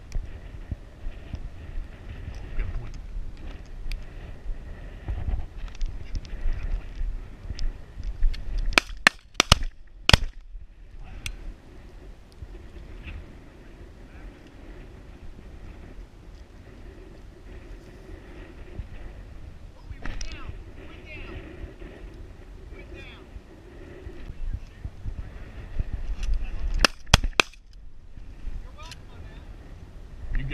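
Shotguns fired at flushing pheasants: a quick string of several shots about nine seconds in, and three more in fast succession near the end, the last of which bring a bird down.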